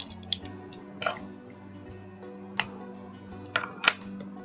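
Quiet background music with about five small, sharp plastic clicks and taps spread through it as small ink pad cases and a foam finger dauber are picked up and handled.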